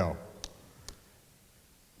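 Two small clicks on a handheld microphone, about half a second apart, as a man's voice trails off, followed by near silence.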